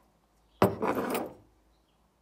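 A single knock with a short scraping rub after it, as a metal aerosol can is set down on a tabletop.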